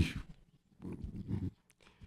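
A man's speech breaks off just after the start, then a pause holding a faint, short breath about a second in.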